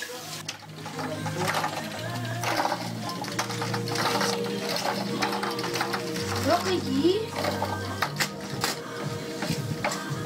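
Background music with held low notes and a fast ticking beat, coming in about a second in.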